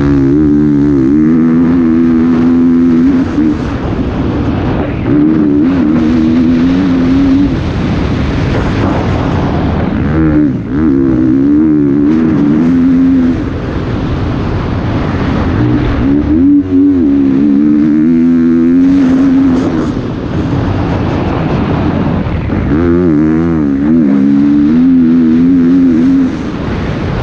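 Dirt bike engine ridden hard, its pitch climbing and dropping in waves every few seconds as the throttle opens and closes through the gears, over a steady rush of wind and tyre noise.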